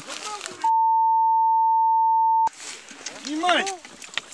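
A censor bleep: a single steady high beep lasting nearly two seconds, laid over a swear word so that everything else drops out beneath it; a man's voice is heard just before and after it.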